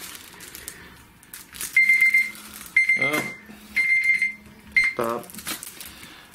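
An electronic beeper sounding four times, about once a second: each beep is a steady high tone about half a second long, the last one shorter.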